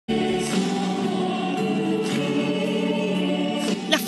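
A group of singers singing together on stage over musical accompaniment, holding long sustained notes at a steady level.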